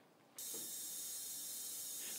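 A 10,000-volt electric arc jumping a gap of about 4 millimetres between two metal balls. It is a steady hiss that starts suddenly about half a second in.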